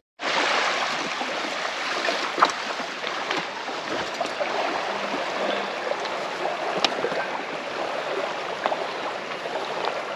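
Small wind-driven waves lapping steadily at a lakeshore, a soft even wash of water.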